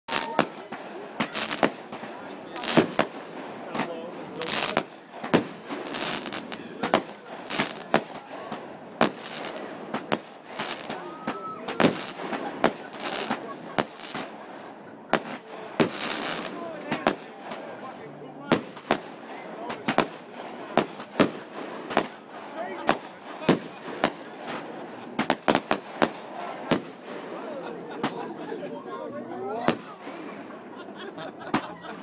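Aerial fireworks bursting in a continuous barrage: sharp bangs one after another, often a few a second, with quicker clusters of reports near the end.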